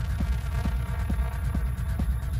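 Techno mixed live by a DJ: a deep, steady bass with a kick-drum beat just over two per second and fast ticking hi-hats above it.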